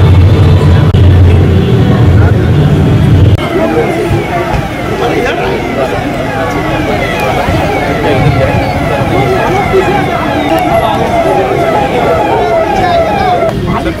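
Background music for the first few seconds, then, after a cut, a police escort siren sounding a quick falling sweep about twice a second, with crowd voices underneath.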